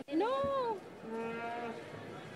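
A single voice gives one long drawn-out cry that rises and falls in pitch, then holds a quieter, steadier lower note, in the manner of a performer's call.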